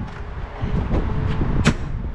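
Steady low outdoor rumble with a single sharp click near the end.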